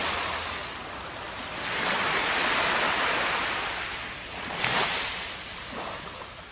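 Surf washing up on a sandy beach, in rising and falling swells a couple of seconds apart, with a brief louder surge near the end.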